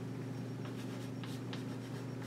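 Chalk writing on a blackboard: a handful of short strokes, over a steady low hum.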